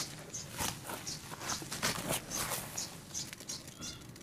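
Hands squeezing and rubbing soaked charcoal blocks in foamy water in a plastic bucket, giving irregular wet squelches and sloshes, several a second.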